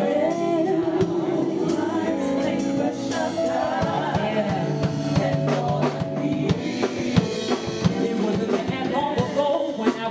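A woman singing live into a handheld microphone, backed by a band with a drum kit keeping a steady beat.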